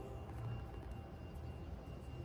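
Faint low rumble with light background hiss: steady room or recording noise, with no music.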